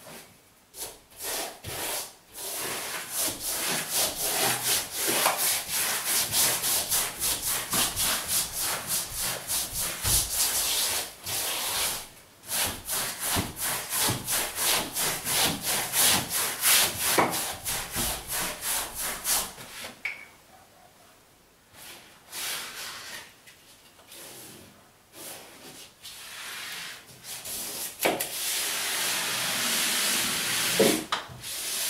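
Paper being brushed onto a wall: rapid, repeated rubbing strokes of a paperhanging brush over freshly hung wallpaper. The strokes stop for a few seconds about two-thirds in, then resume as steadier rubbing near the end.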